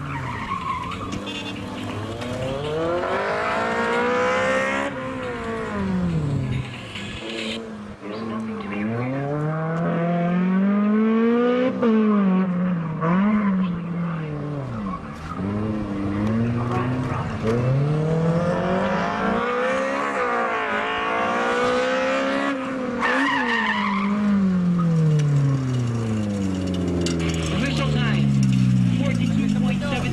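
Honda Civic SiR's B16A four-cylinder engine revving hard through a cone slalom. Its pitch climbs and falls away again and again with each acceleration, lift and shift, and the tyres squeal at times.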